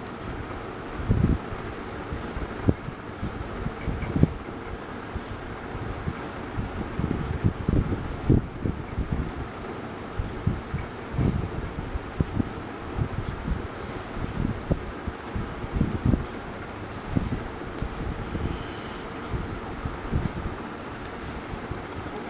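Handling noise on a hand-held camera's microphone: irregular soft low bumps and rumble over a steady faint hum.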